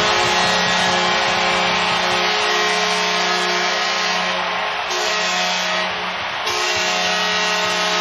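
Home arena crowd cheering loudly just after a goal, with the goal horn's steady chord sounding over the noise.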